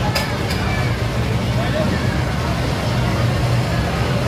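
Loud indoor games-arcade din: a steady low rumble of machines with people's voices in the background.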